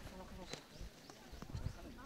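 Footsteps of a group walking on a straw-strewn dirt path, with soft thuds mostly in the second half, under faint voices.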